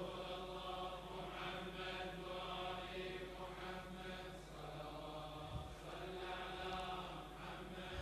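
A congregation of men chanting together in unison, faint and steady, with no single voice standing out.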